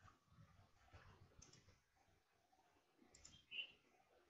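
Near silence, with a few faint clicks.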